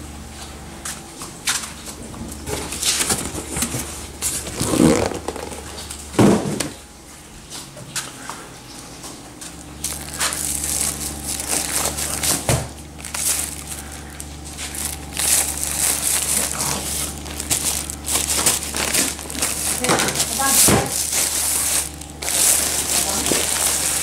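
Plastic shopping bag crinkling and rustling in irregular bursts as it is handled and cut open with scissors.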